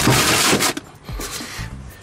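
Clear plastic bags rustling and crinkling loudly for under a second as they are grabbed and shoved aside, then much quieter.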